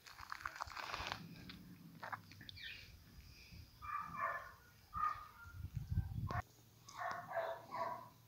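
Dogs barking, a few short barks about halfway through and again near the end.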